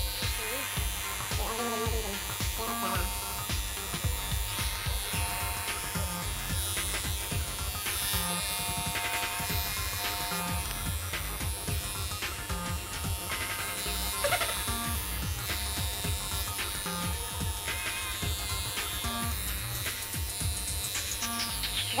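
Electric grooming clippers buzzing steadily as a small dog's fur is trimmed.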